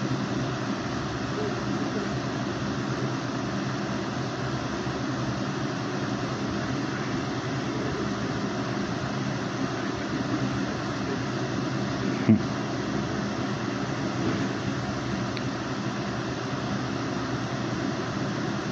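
Steady background hiss and hum, like a fan or air conditioner running, with a single brief knock about twelve seconds in.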